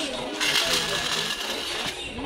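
Small plastic toy car being pushed along a tile floor, giving a steady whirr with a thin high tone that starts about half a second in and stops near the end.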